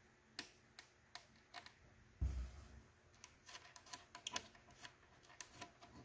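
Faint, scattered small clicks and ticks of fingers handling the small metal M.2 mounting standoff on a motherboard while it is moved to another hole, with a quick run of clicks in the second half. A single duller thump about two seconds in.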